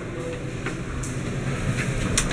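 Elevator door operator running, which sounds like an original Otis Series 1 operator: a low steady rumble that grows a little louder, with a few faint clicks as panel buttons are pressed.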